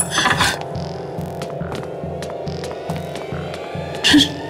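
Low, throbbing suspense drone of a horror-serial background score, steady and pulsing evenly, with a brief noisy burst at the very start.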